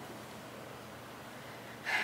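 A person's soft, steady breathing, with a quick intake of breath near the end.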